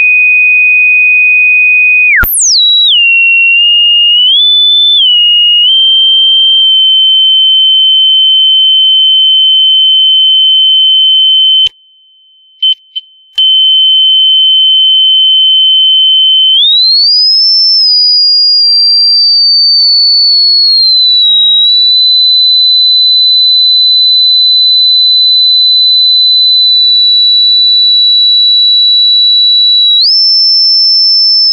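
Loud, pure sine test tone from an audio signal generator fed into a line input, tuned by hand to check how high the audio encoding passes. The single high-pitched tone is swept quickly about two seconds in, then shifts up and down in small steps. It cuts out for about a second and a half with a few clicks near the middle, then glides higher and eases back down before holding steady.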